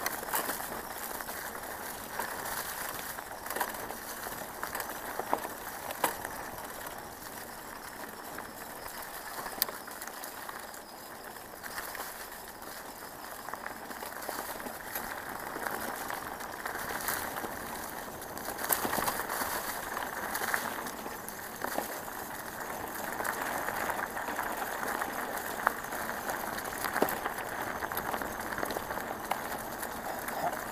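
Bicycle rolling along a forest track covered in dry fallen leaves: a steady rustling of tyres over leaves and dirt, with scattered sharp knocks and rattles from bumps in the track.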